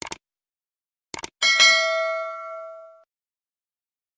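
A few quick clicks, then a single bright bell-like ding about a second and a half in that rings with several clear tones and fades out over about a second and a half.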